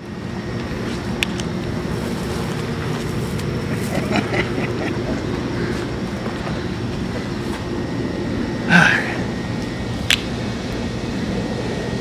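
Steady low mechanical hum with a short vocal sound about nine seconds in.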